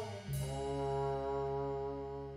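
Trombone sliding down in pitch into a long held note, with a low electric bass note sustained underneath.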